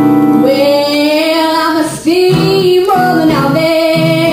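A girl singing over acoustic guitar accompaniment, her voice coming in about half a second in with long held, sliding notes while the guitars keep strumming underneath.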